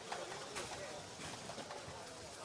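Faint background of a competition hall: distant voices with a few light clicks and knocks.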